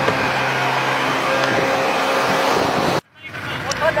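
A boat's outboard motor running at a steady pitch, cut off abruptly about three seconds in.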